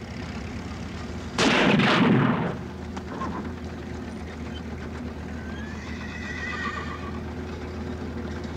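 Horse neighing: a loud, harsh burst about a second and a half in, then a long, wavering whinny near the middle.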